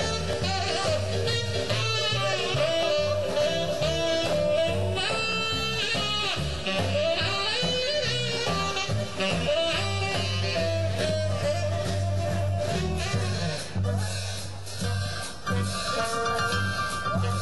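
A live swing band playing an instrumental passage of a jump-blues number: a melody line over bass and drums, with no singing.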